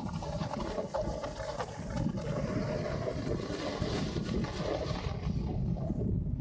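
Snowboard sliding and scraping over firm, tracked snow: a continuous rough hiss with a low rumble from wind on the microphone.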